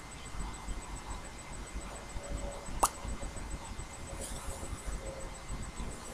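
A single short lip smack, about three seconds in, as lips are pressed together and parted, over faint steady room noise.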